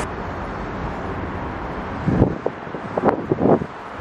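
A steady outdoor traffic hum with wind buffeting the microphone: several irregular gusts in the second half, the loudest sounds here.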